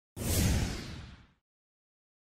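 A single whoosh sound effect used as a scene transition: it starts suddenly with a deep low boom under a high swish, then fades out over about a second.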